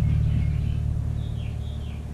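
A steady low hum that slowly fades, with a faint high wavering tone in the second half.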